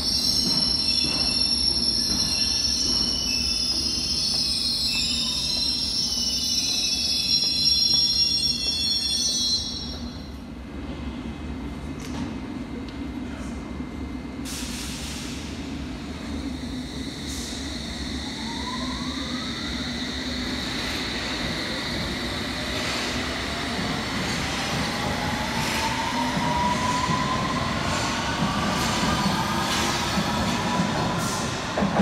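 London Underground S7 Stock trains: high-pitched wheel squeal for about the first ten seconds, then a train running with a steady hum and a rising electric motor whine as it pulls away in the last third.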